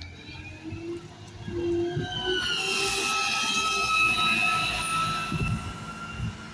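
Alexander Dennis Enviro 200 single-deck bus giving off an excruciating high-pitched squeal as it pulls away. The squeal is several steady shrill tones at once; it grows loud about two seconds in and fades near the end.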